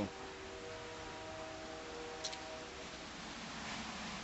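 Steady rain falling, heard as an even hiss, with a steady droning hum of several pitches at once that fades out after about three seconds, and a single faint tick a little past the middle.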